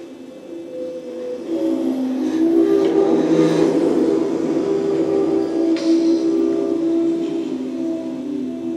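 A prepared string quartet playing long held notes in the middle register. Several pitches overlap into a dense, slowly shifting cluster that swells in loudness over the first few seconds and then stays loud.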